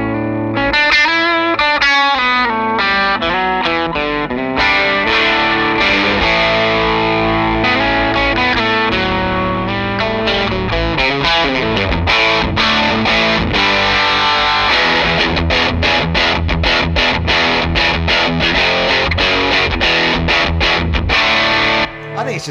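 Electric guitar played through an Electronic Audio Experiments Halberd V2 overdrive pedal, with a classic-rock drive tone. Quick single-note lines at first, then held chords, and a fast, even chugging rhythm in the second half that stops right at the end.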